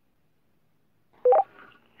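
A two-way radio's short electronic beep, a lower tone followed by a higher one, lasting about a third of a second, sounding about a second in. It marks the start of a radio transmission.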